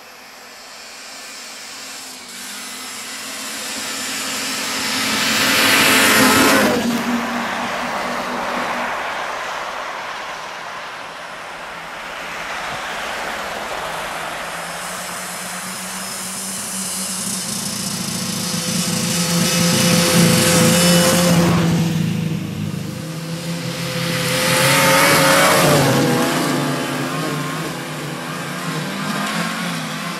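Snowmobile engines passing one after another: each swells as the machine approaches and drops in pitch as it goes by. One passes about six seconds in, then two more go by close together later on.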